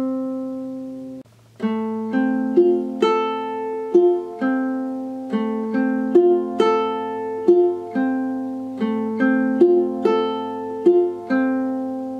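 Ukulele fingerpicked in a repeating pattern, single strings plucked in turn (fourth, third, second, first, a slight pause, then back to second and third) so the notes ring over one another. After a short break about a second in, the pattern runs steadily and the chords change as it goes.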